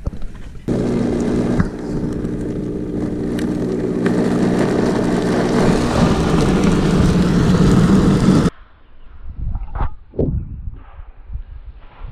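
Countertop blender motor running at speed, liquefying jalapeños and honey in water; it starts under a second in as a steady hum with a grinding wash and stops suddenly after about eight seconds.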